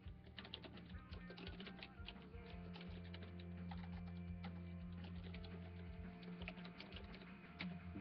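Faint typing on a computer keyboard, a quick irregular run of light key clicks, over a low steady hum and faint background music.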